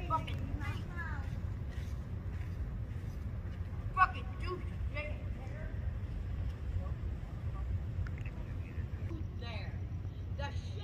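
Distant, unintelligible voices over a steady low rumble, with one sharp click about four seconds in.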